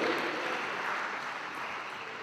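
Audience applauding, slowly dying down.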